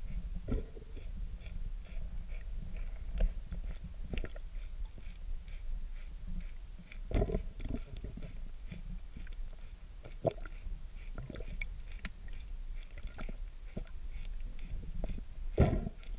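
Underwater sound through a submerged camera: a steady low rumble with irregular clicks and knocks scattered throughout, the loudest knock near the end.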